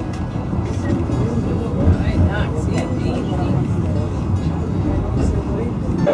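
Low steady rumble of the Fløibanen funicular car running on its track, heard from inside the car, with passengers' voices faint over it.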